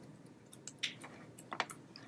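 A few faint, irregular taps and clicks on a laptop, a cluster about half a second to a second in and another near the end.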